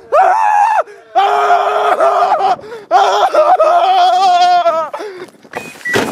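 Young men screaming in fright: three long, loud, high-pitched screams with short breaks between them, the last one wavering before it dies away.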